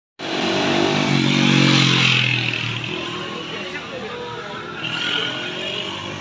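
A motorcycle engine running close by and fading away over the first two to three seconds, followed by lower street noise.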